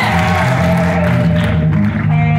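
Live rock band playing loudly: electric guitar holding a sustained note over a steady bass-guitar line, with drums. The cymbal wash drops away near the end.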